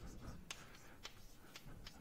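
Chalk on a blackboard, faint taps and scratches as a line of writing goes up.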